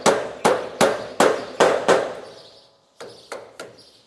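A hammer nailing small clips back onto metal roof flashing: six sharp strikes with a metallic ring, about 0.4 s apart, then a few lighter taps near the end.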